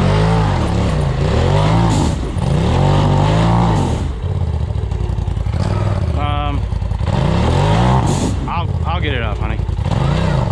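Polaris RZR side-by-side engine revving up and down in repeated surges as it crawls up a rocky ledge, with about three rises in pitch. A couple of short shouts are heard in the second half.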